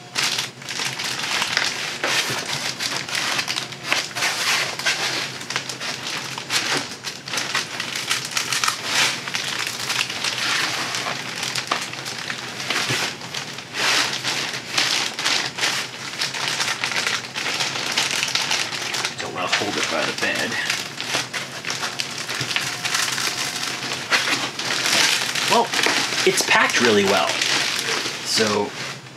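Clear plastic bag crinkling and rustling steadily as a bagged 3D printer is handled and worked out of its foam packing.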